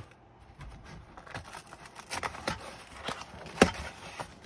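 Thin cardboard retail box being handled and its end flap pried open. It makes a run of irregular light scrapes and clicks, with one sharp click about three and a half seconds in.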